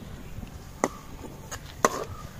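A long metal spatula knocking against an aluminium wok while stirring fried spices. It gives two sharp knocks about a second apart, each followed by a brief ring from the pan.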